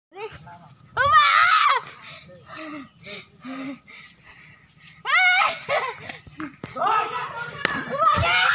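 Children shouting and squealing, with a loud high-pitched shout about a second in and another about five seconds in.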